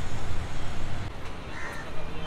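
A crow cawing near the end, over a low rumble of street noise.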